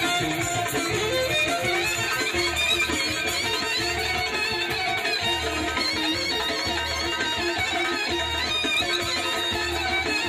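Live Balkan folk dance music from a band with saxophone: a busy melody over a steady, regular bass beat.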